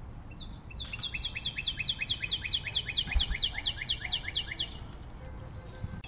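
A fast, even run of short bird-like chirps, each one falling in pitch, about four or five a second. It starts just after the beginning and stops about a second before the end.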